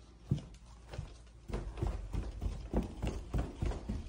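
Footsteps going down carpeted stairs: a steady run of dull thumps, about three steps a second, getting going about a second and a half in.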